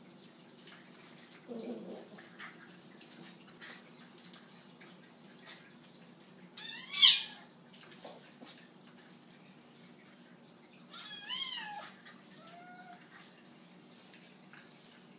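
Kitten meowing: a loud rising-and-falling cry about halfway through, and another near the end followed by a short fainter one. Light scuffling clicks come from the kitten and miniature schnauzer wrestling.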